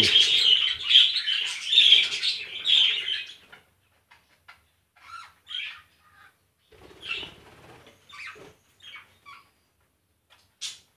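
A flock of budgerigars chattering: a dense, loud burst of chirping for the first three seconds or so, then only scattered short chirps.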